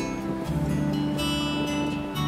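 Acoustic guitar music with chords strummed, changing chord about half a second in.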